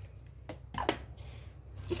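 Wire whisk knocking lightly against a stainless steel mixing bowl of coconut milk and sugar: two short clinks, about half a second and just under a second in, over a low steady hum.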